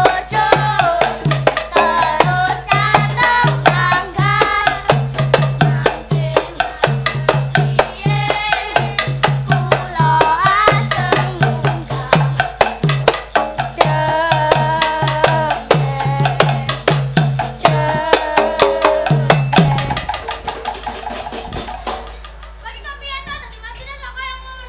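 Music for a Javanese children's game-song (dolanan) performance: a sung melody over a steady drum beat with sharp percussion strokes. About twenty seconds in, the drum stops and the music drops to a quieter, softer sung passage.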